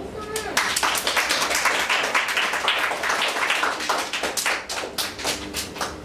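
Audience applause: many hands clapping together, with some voices mixed in, thinning out over the last couple of seconds.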